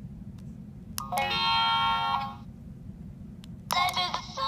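Barbie Rock 'n Royals singing doll's sound unit set off by pressing its necklace. A click about a second in is followed by a short held electronic tone through the doll's small speaker, lasting about a second and a half. Near the end another click comes and the doll's song begins.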